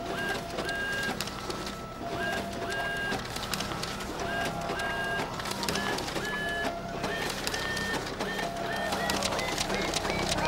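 Photocopier running: a string of short electronic beeps at changing pitches over repeated mechanical clicking, the clicking growing busier near the end.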